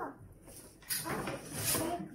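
Paper shopping bag rustling and a cardboard shoebox being handled as it is pulled out, starting about a second in.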